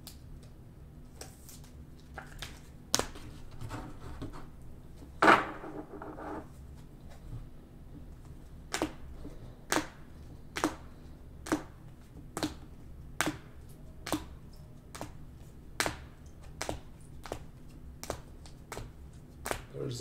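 Rigid plastic card holders clacking against each other as graded-style sports cards are flipped one by one from the front to the back of a stack. The clacks come irregularly at first, the loudest about five seconds in, then settle into an even pace of about one a second.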